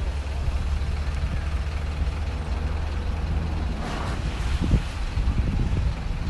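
A vehicle engine idling: a steady low rumble, with a short hiss about four seconds in.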